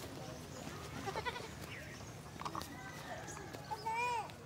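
Village ambience: a goat bleats among faint, scattered voices, with a louder falling call near the end.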